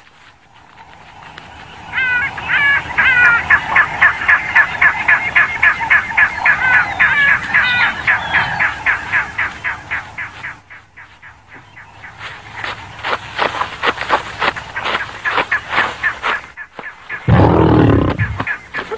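Spotted hyena calling: a rapid, even run of high, pitched yelping notes, about four a second, lasting several seconds, then more rapid, sharper calls. These are agitated calls that draw other clan members to her support. A loud, low sound comes near the end.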